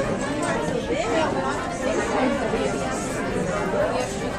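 Indistinct chatter of several people talking at once in a room, no single voice clear.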